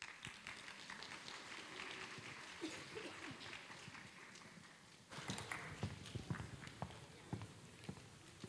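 Footsteps of a group of people walking across a wooden stage: a dense, quiet patter of many steps for the first few seconds, then fewer, louder separate steps from about five seconds in.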